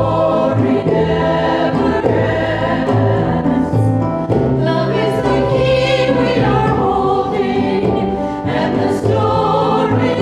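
A stage-musical ensemble of voices singing a song together, with instrumental accompaniment underneath holding low sustained notes.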